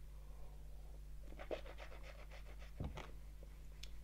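Faint wet sounds of a person swishing water around in the mouth to rinse the palate between whiskies: a cluster of short soft clicks in the middle and a couple more near the end.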